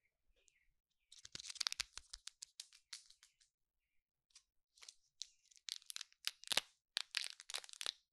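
Plastic wrapper of a lollipop being crinkled and peeled off close to the microphone, in two spells of dense crackling, the first about a second in and the second from about five seconds.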